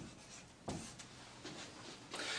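Dry-erase marker scratching on a whiteboard in a few short, faint strokes as the "÷3" is written.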